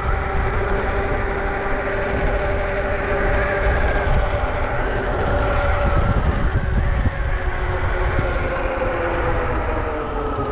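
Ariel Rider D-Class dual-hub-motor e-bike riding along a paved road: a steady whine from the motors and fat tyres that drifts slightly in pitch with speed, over a low rumble of wind on the microphone.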